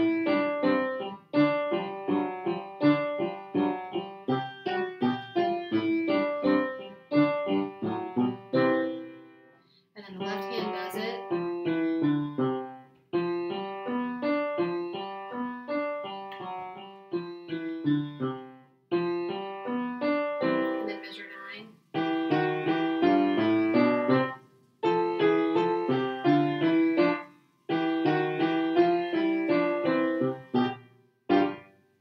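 Upright piano playing the teacher duet part of a beginner's rag at a slow tempo, in short phrases with brief breaks between them.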